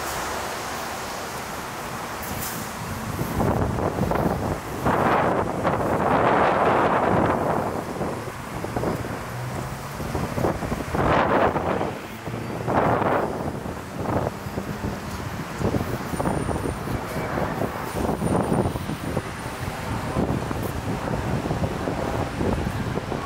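Night city street ambience: traffic passing, with wind on the camera's built-in microphone. Several loud surges of noise come between about three and thirteen seconds in.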